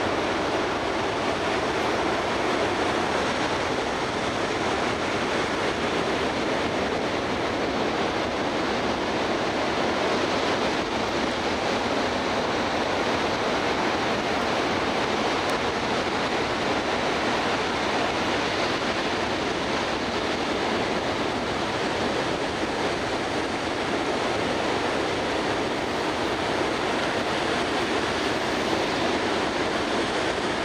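Rough ocean surf breaking on a sandy beach: a steady, even wash of noise with no breaks.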